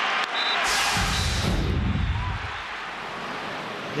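Crowd noise in a large stadium, broken by a TV broadcast's transition sound effect: a whoosh falling in pitch over a deep rumble, lasting about two seconds. A quieter, even crowd murmur follows.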